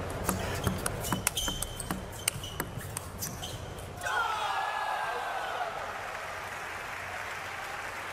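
Table tennis rally: the celluloid ball clicking rapidly off the bats and the table for about four seconds. The rally then stops and a burst of crowd voices rises as the point ends.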